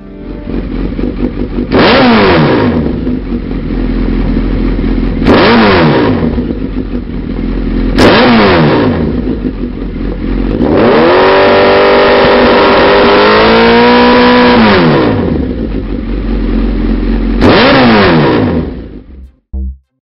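Suzuki GSX1300R Hayabusa's inline-four engine through a Lextek CP1 aftermarket silencer, idling and revved: four quick blips that rise sharply and fall back to idle, and one rev in the middle held for about four seconds before dropping back.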